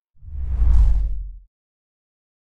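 A whoosh sound effect from an outro logo animation, swelling up just after the start and gone by about a second and a half.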